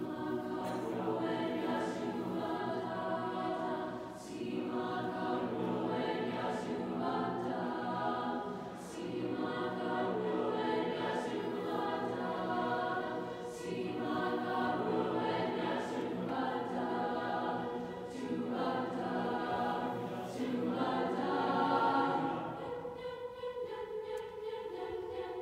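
High school mixed choir singing sustained chords in phrases a few seconds long, with crisp sibilant consonants cutting through about every two seconds.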